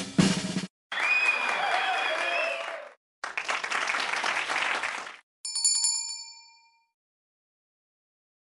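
Outro sound effects: the tail of a drum roll, then two bursts of applause, the first with a wavering whistle-like tone over it, then a single bright bell ding that rings for about a second and fades.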